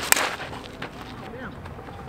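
Two-piece composite slowpitch softball bat (Miken Freak 23KP, end-loaded) hitting a softball: one sharp crack just after the start.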